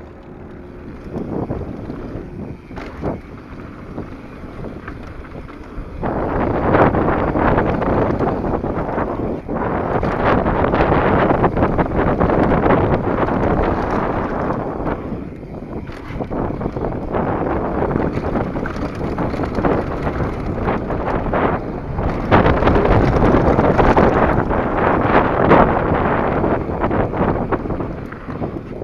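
Wind buffeting the camera microphone while a mountain bike rolls fast down a dirt trail: tyre roar with frequent knocks and rattles over bumps. It gets louder about six seconds in as the bike picks up speed on the descent.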